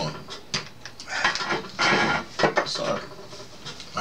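Rustling and a few sharp knocks from objects being moved about on a desk, mixed with brief low muttering.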